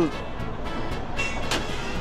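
Draft beer tap hissing and sputtering as it dispenses wheat beer that comes out almost all foam, under background music. A short knock about a second and a half in as the glass is set on the metal drip tray.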